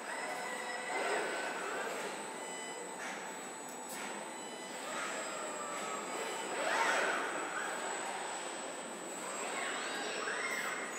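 Body-shop machinery in a car factory: industrial robot arms and clamping fixtures working on a car body shell. It is a steady mechanical din with metallic squeals and whines that rise and fall, the loudest about seven seconds in.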